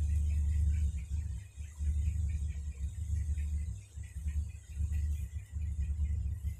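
A low, uneven rumble that dips out briefly several times, with faint higher chirping or music in the background.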